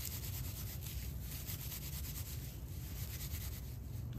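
Dry pine needles rustling steadily as they are rubbed and twisted between the hands into a tinder bundle.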